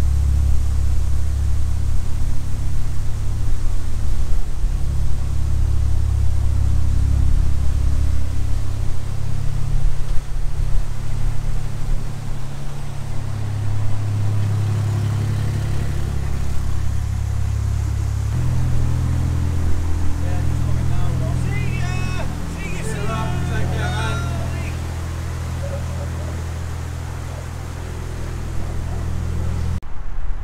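Narrowboat's diesel engine running steadily at low revs, its note shifting about two thirds of the way through.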